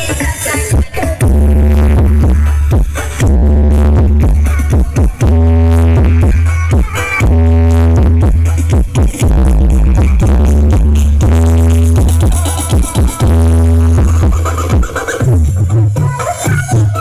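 Loud electronic dance music played through a large stacked-subwoofer sound system, with very deep bass notes held about a second at a time over a steady beat.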